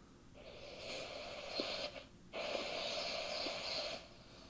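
Hissing breath noise close to a microphone. A long stretch swells up, breaks off about two seconds in, then resumes as a steady stretch that cuts off suddenly just before the end.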